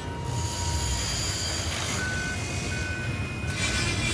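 Heavy industrial machinery rumbling with a hiss, and from about halfway a run of short, repeating warning beeps like a crane or vehicle motion alarm.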